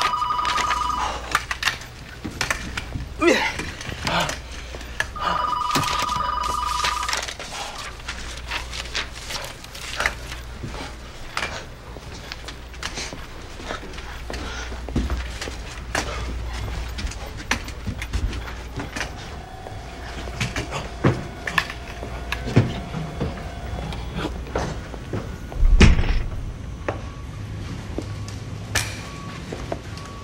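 Office desk telephone ringing with an electronic trilling double tone, two rings about five seconds apart, the first ending about a second in. Scattered knocks and clicks follow, with a loud thump near the end.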